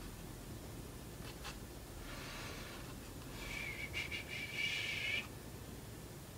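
Pencil marking on cardstock: a faint tick, a soft stroke, then a longer scratchy stroke of about two seconds with a thin high squeak through it, ending suddenly.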